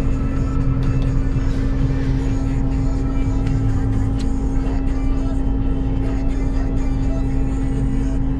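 Claas Lexion 8800TT combine harvester running steadily under load while cutting barley, heard from inside its cab: an even drone of several steady tones, led by a strong hum, over a low rumble.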